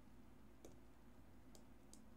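Near silence with two faint clicks: a stylus tapping on a tablet screen while writing by hand.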